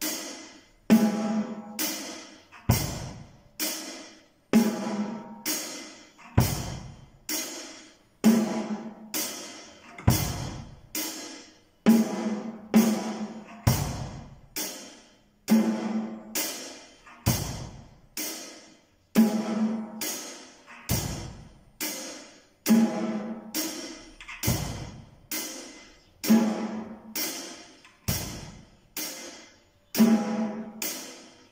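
Beginner playing a steady basic rock beat on a drum kit: a cymbal struck about twice a second, with a bass drum stroke on the first beat of each bar and snare hits ringing in between. The beat keeps an even tempo throughout.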